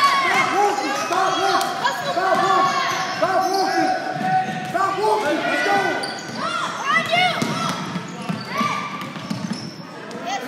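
A basketball is dribbled on a hardwood gym floor while sneakers squeak in many short chirps as players cut and stop, all echoing in a large gym hall.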